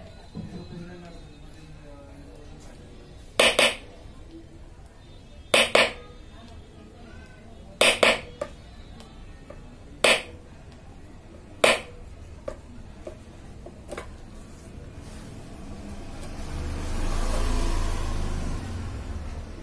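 Five sharp knocks at a soldering bench, roughly two seconds apart, some of them doubled, from a tool struck against a hard surface. A rushing noise swells up near the end.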